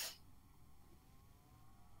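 Near silence over the video-call audio, with one short click right at the start.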